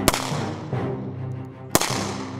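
Two shots from a Colt Model 1877 Lightning double-action revolver firing black-powder .38 Long Colt, about a second and a half apart, over background music.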